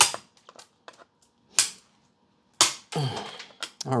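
Hard plastic SGC grading slab being cracked open with a cutting blade: three sharp cracks about a second apart as the case splits, with small plastic ticks in between.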